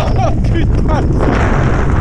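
Rushing air hitting the camera microphone during a tandem skydive: a loud, continuous low rumble. A few brief voice sounds rise and fall in pitch over it.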